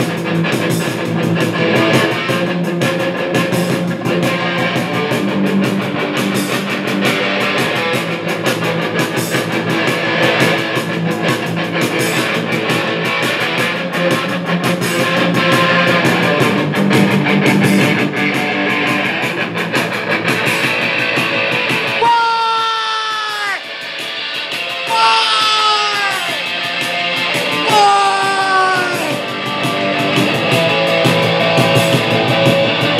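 Live punk rock band playing loud distorted electric guitar over drums. About two thirds of the way in, the low end drops out, leaving three falling wails about a second each, before the full band comes back in near the end.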